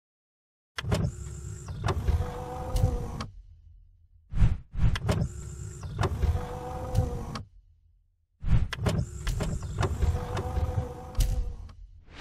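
Intro-animation sound effect of a motorised mechanism: three separate whirring, sliding runs of about three seconds each, each set off and punctuated by sharp mechanical clicks and clunks, with short silent gaps between them. It ends in a brief whoosh.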